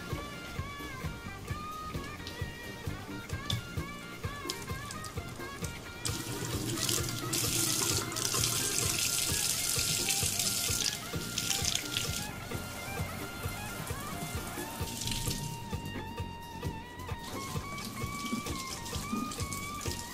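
Kitchen faucet running into a stainless steel sink of soapy water while small plastic parts are rinsed by hand under the stream. The water's hiss is loudest for several seconds in the middle, then eases off. Instrumental background music plays underneath.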